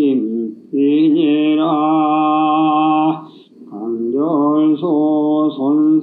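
A man's voice chanting a Classical Chinese passage in the traditional Korean seongdok (chanted reading) style. It holds long notes that bend in pitch, with a short breath break about halfway through.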